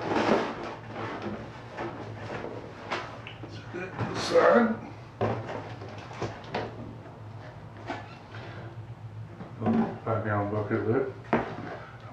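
Irregular knocks, scrapes and rustles of cardboard and plastic as round white plastic brewing gear is handled and lifted out of a cardboard shipping box. The loudest scrape comes about four seconds in.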